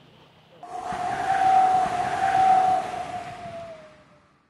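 Outro sound effect: a loud rushing noise carrying a steady whistling tone. It rises in about half a second in, then fades near the end as the tone drops slightly in pitch.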